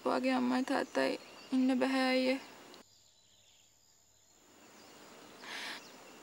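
A woman's voice speaking for about two and a half seconds, then an abrupt drop to a quiet outdoor background with faint insect sounds, broken by a brief soft swish of noise near the end.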